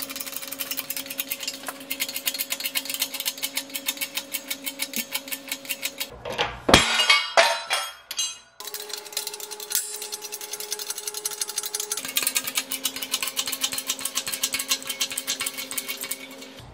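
A 20-ton hydraulic shop press bearing down on a welded steel test piece: fast, even metallic clicking over a steady hum. Louder clanking comes about six to seven seconds in.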